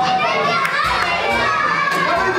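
A group of young children talking and calling out over one another, many voices at once.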